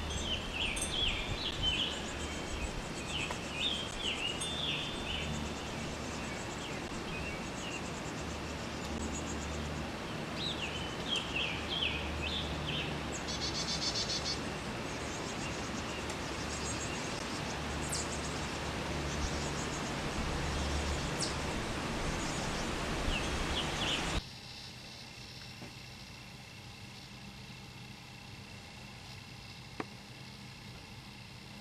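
Small birds chirping in short clusters of calls over a steady outdoor hiss and low rumble; about three quarters through, the sound drops to a quieter, even hiss.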